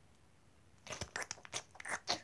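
Short dry crunching clicks, starting about a second in, as a toy horse is played eating straw-like hay from a small wooden feeder.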